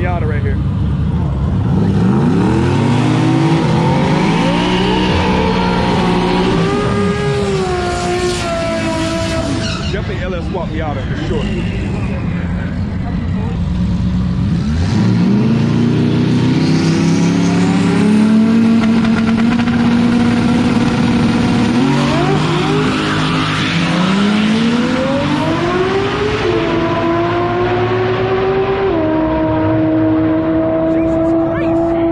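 Drag-race car engines revving hard. The pitch climbs for several seconds and falls away, then climbs again with a series of stepwise drops like gear changes as a car pulls away down the strip.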